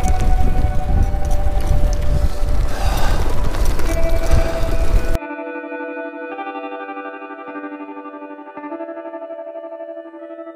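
Strong wind buffeting the microphone on a bicycle ride, with background music under it. About five seconds in the wind noise cuts off suddenly, leaving slow ambient music of sustained, echoing guitar-like notes.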